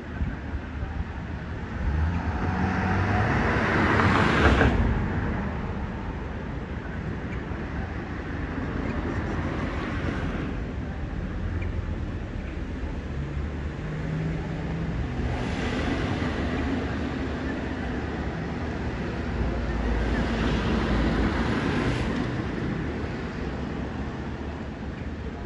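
Outdoor street noise that swells and dies away four times, each swell building over a second or two and then ending abruptly. A low rumble of wind on the microphone comes and goes underneath.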